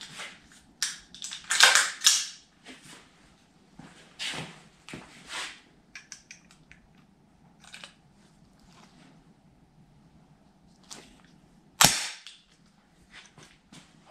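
Metal clicks and clacks of an AR-15-style rifle being handled to single-load a cartridge by hand without a magazine, with one sharp metallic clack near the end as the round is chambered.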